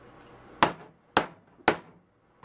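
Hammer striking a MacBook Pro laptop three times, sharp blows about half a second apart.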